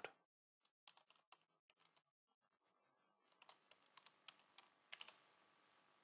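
Faint computer keyboard typing: scattered key clicks, a few about a second in and a longer run in the second half.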